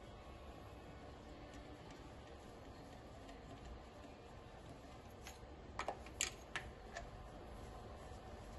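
Faint room noise, then a quick run of about five light, sharp clicks and taps about six seconds in, as compression-tester fittings are handled at the spark plug wells of a bare engine.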